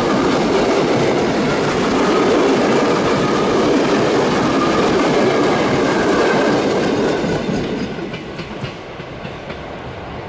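Passenger coaches of a long train rolling past, their wheels clattering over the rails. The sound fades about seven seconds in as the last coach goes by, leaving a few faint clicks from the receding wheels.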